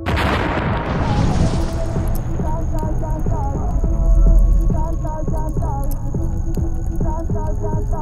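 Music: a backing track that opens with a crash-like hit fading over about a second and a half, then a repeating melody over a heavy bass line, with a deep bass swell about four seconds in.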